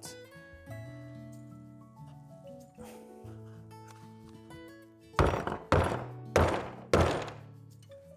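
A hammer strikes a wooden block four times, about half a second apart, driving a new dust seal into the aluminium lid of a Danfoss hydraulic drive motor. Background music plays under it.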